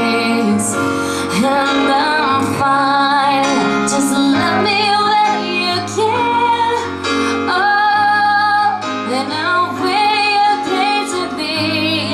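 A woman singing a song live into a microphone over instrumental backing, holding a long note near the middle.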